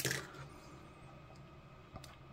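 A single sharp click of plastic being handled, as a model-kit sprue is moved about. Then only faint room tone.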